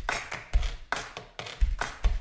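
A loose run of percussive knocks and taps, about five in two seconds, each a low thump with a sharper click on top. There is no singing or melody with them.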